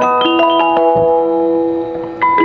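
Two-tune music box in the base of a circa-1880 French automaton playing its tune: plucked, bell-like notes ringing on, with a brief lull near the end.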